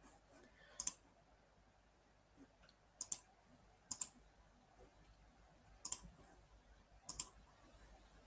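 Computer mouse button clicks: five short, sharp clicks spaced unevenly.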